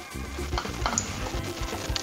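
Wet squelching of a hand squeezing and lifting pieces of lamb out of a thick blended marinade in a glass bowl, with music playing underneath.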